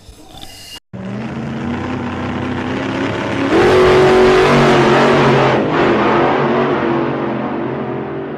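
Small engine on a motorized bicycle running. It revs up about halfway through as the bike pulls away, then runs steadily and fades as it moves off.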